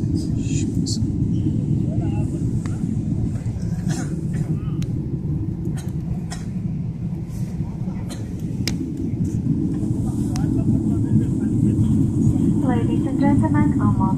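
Steady low roar inside the cabin of a Boeing 777-300ER climbing after takeoff: engine and airflow noise heard from a window seat, with a few scattered clicks.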